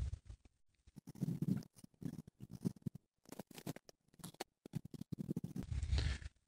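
Faint, irregular crackling and rustling of footsteps shuffling through dry grass.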